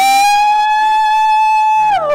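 A woman's voice crying out one long, loud, high note into a microphone, rising into it at the start and sliding down at the end.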